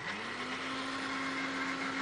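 A motor running steadily with a hiss; its hum rises briefly at the start and then holds at one pitch.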